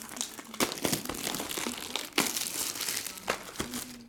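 Plastic shrink wrap crinkling and tearing as a sealed box of baseball cards is unwrapped, an irregular crackle with many sharp clicks.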